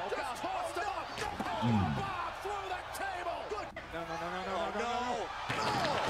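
Wrestling broadcast audio: commentators talking, with the slam of a wrestler crashing through an announce table.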